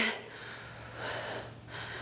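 A woman breathing from exertion during a dumbbell exercise: two breaths, then a fainter third near the end.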